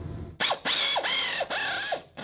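Cordless power ratchet running in about four short bursts, starting a little under half a second in, its motor whine dipping and rising under load as it drives a bolt into the centre of a go-kart's Juggernaut torque converter driver pulley.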